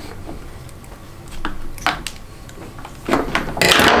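Household scissors cutting through a thick insulated copper battery cable: a few small clicks, then about a second of louder noise near the end as the blades go through the cable.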